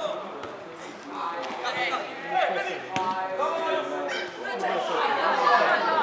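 Several people talking at once, overlapping conversation near the microphone, with a single sharp knock about three seconds in.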